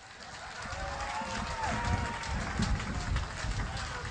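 Microphone handling noise as the mic is raised on its stand: irregular low bumps and rubbing picked up by the microphone itself.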